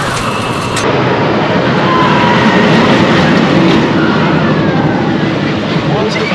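Train of Mamba, a D.H. Morgan steel hyper coaster, rumbling along its track. It grows louder about a second in and stays loud through the middle.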